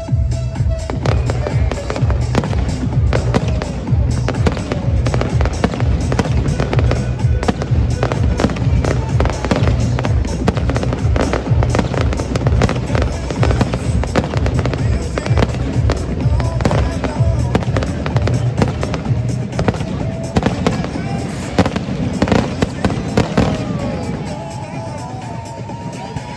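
Aerial firework shells bursting in a dense, rapid barrage, many bangs and crackles overlapping, over music with a heavy bass beat.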